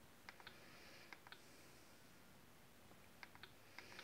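Near silence with a few faint small clicks in quick pairs and threes, some in the first second and more from about three seconds in.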